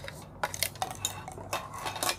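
Light metallic clicks and clinks from handling a metal wristwatch and its fine chain bracelet over tin watch boxes, several in quick succession and clustered in the second second.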